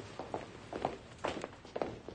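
Footsteps of several men walking briskly across a hard floor, a quick irregular run of steps.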